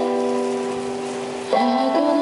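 Electronic keyboard playing a ballad accompaniment: one chord is held and slowly fades, then about one and a half seconds in the next phrase starts with new notes.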